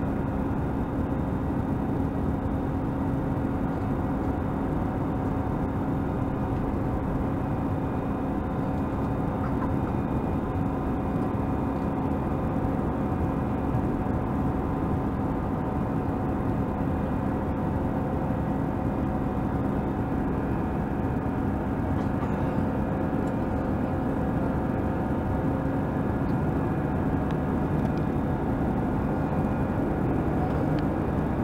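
Steady engine and airflow noise inside the cabin of an Airbus A320 in flight shortly after takeoff, with a constant low hum running through it.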